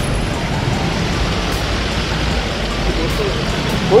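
Steady outdoor background noise with a low rumble throughout and faint voices in the background near the end.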